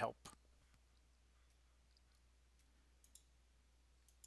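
Near silence with a few faint computer mouse clicks: one just after the start, then a quick pair about three seconds in.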